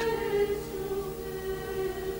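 Soft background choral music: voices holding a sustained chord.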